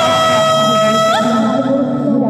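A woman's high sung note, held and then sliding upward as it breaks off a little over a second in, over lower sustained live-looped vocal layers.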